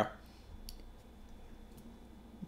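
Quiet room tone in a pause between a man's speech, with two faint short clicks, the first under a second in and the second near the end.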